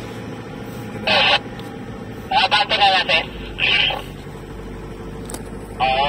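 Car running as it climbs a steep road, heard from inside the cabin as a steady hum, with four short high voice-like calls over it about one, two and a half, three and a half and six seconds in.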